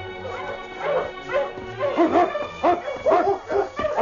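Radio-drama sound effect of a sled-dog team barking, many short calls coming quickly and overlapping, growing busier from about a second in. Orchestral string music fades out under them at the start. The sound is narrow and old, like a 1950 radio broadcast.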